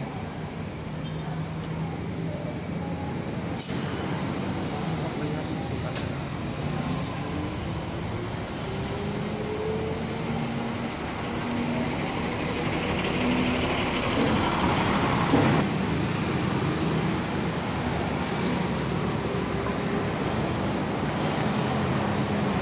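Bangkok city bus's diesel engine running beside the kerb, then rising in pitch as the bus pulls away into traffic. There are a couple of sharp clicks early on and a rush of noise around the middle.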